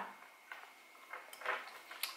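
A few faint, wet mouth clicks and smacks from chewing a bite of sandwich and licking the fingers.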